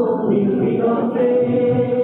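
Music for a dance: a song with voices singing held notes over accompaniment, sounding muffled and dull.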